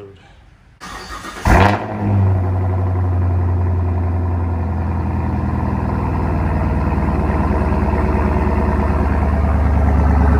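Chevrolet Camaro SS LT1 V8 cold-starting after sitting for a week. A brief crank about a second in catches with a loud flare of revs, and the engine then settles into a steady idle through the exhaust.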